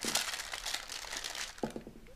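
Paper crinkling and rustling as chocolate-coated strawberries are lifted off the paper lining a tray, dying down about a second and a half in.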